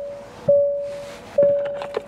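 Electronic warning chime in a truck cab with the door open: a single steady tone ringing just under once a second, each ring fading before the next, twice here, with a light click near the end.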